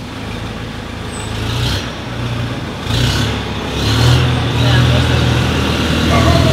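A low engine rumble, like a motor vehicle running nearby, growing louder about three seconds in, with a few short bursts of hiss.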